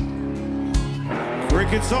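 Live band music: acoustic and electric guitars over a steady drum beat. A male lead vocal comes in near the end, singing about lightning bugs.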